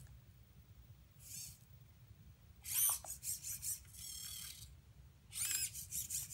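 The small Dynamixel XL-320 servo motors of a ROBOTIS-MINI humanoid robot whining as it moves its arms and body, in a series of short high-pitched whines that slide up and down in pitch: one about a second in, a cluster in the middle, and another near the end.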